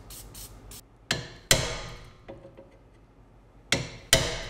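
A hammer striking a flathead screwdriver braced against the parking brake arm of a rusted rear brake caliper that is seized: three sharp metallic strikes, two about a second in and half a second apart and one near the end, each ringing briefly. A few short hisses of penetrating spray come just before the first strike.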